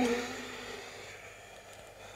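A woman's long, soft exhale through the mouth, fading out over about a second and a half as she folds forward in a yoga flow.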